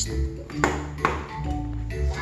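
Background music made of sustained, melodic notes, with two light taps a little before and at the midpoint.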